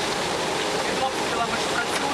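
Steady rush of water at the open top hatch of a rescue-service water tanker, with faint voices under it.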